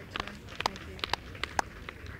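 A few people clapping lightly and unevenly, sharp separate claps several times a second, over faint outdoor background.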